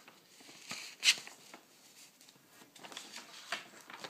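Pencil writing on paper in short scratchy strokes, coming in two clusters, with a sharp, loud stroke about a second in.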